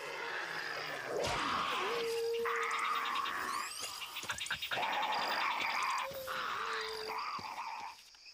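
Film sound design for a terror bird's call: a series of long, rough, hoarse calls with a steady whistle-like tone running under them twice, and a fast rattle of ticks above.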